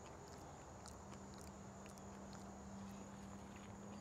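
Near silence: quiet outdoor ambience with a thin steady high whine, a faint low hum coming in about a second in, and a few faint ticks.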